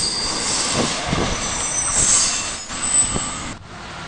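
Container freight train wagons rolling past at close range: wheels and rails rumbling and clattering, with thin high wheel squeals and a few knocks. The sound cuts off suddenly near the end, leaving a quieter steady background.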